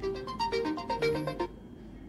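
Smartphone ringtone for an incoming WhatsApp voice call: a short melody of quick notes that stops about a second and a half in.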